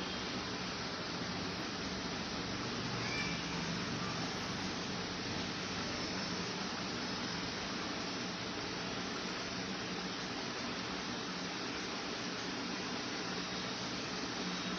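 Steady background hiss with a faint low hum, unchanging throughout.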